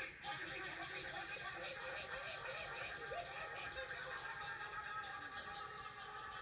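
Several voices sounding at once in a dubbed anime soundtrack, a steady jumbled clamour with no single clear speaker.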